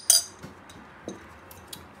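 Glass stirring rod clinking against a glass beaker: one sharp clink at the start, then a few faint taps.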